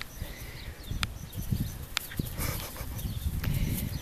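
Footsteps on a grass lawn with a low rumble of handling on the microphone, and two sharp clicks about one and two seconds in.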